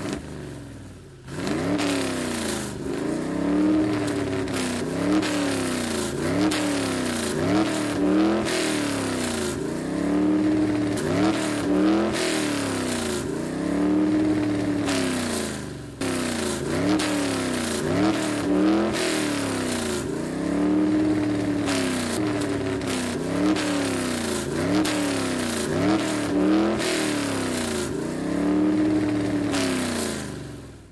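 A racing-car engine sound effect laid over the video, revving up and down in a steady repeating pattern about once a second, with a break about halfway through where the loop starts again.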